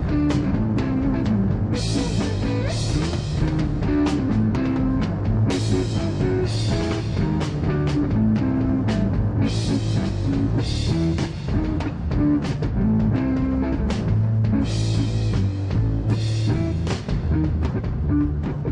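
Live psychedelic rock power trio playing without vocals: distorted electric guitar, bass guitar and drum kit, with repeated cymbal crashes over a busy low end.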